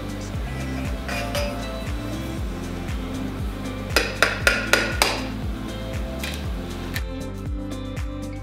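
Background music with a steady beat, and a little past the middle a quick run of about five sharp clinks on a stainless steel mixing bowl as an egg is cracked and worked in it.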